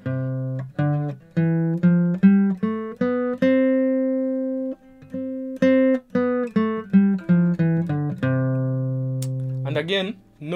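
Acoustic guitar picked one note at a time through the C major scale in second position: the notes climb about an octave to a held top note, then descend and end on a long-ringing low root.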